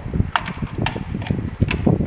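Several light clicks and knocks as a 3D printer's motherboard is handled and set against the printer's metal frame.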